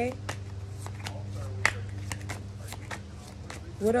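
Deck of tarot cards being shuffled by hand: a string of irregular soft card clicks and riffles, with one sharper snap about a second and a half in.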